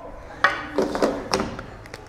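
A few sharp wooden knocks and clatters, a long wooden ruler being picked up and handled at a whiteboard.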